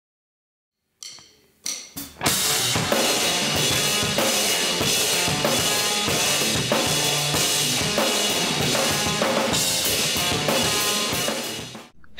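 Rock drum kit played hard, with snare, bass drum and cymbals. After a second of silence come two single hits, then a full driving beat from about two seconds in, which stops abruptly just before the end.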